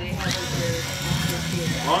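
Electric pepper grinder whirring as its small motor grinds pepper.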